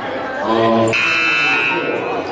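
Gymnasium scoreboard horn sounding one steady, loud, buzzing blast of a little under a second, starting about a second in, during a stoppage in a basketball game.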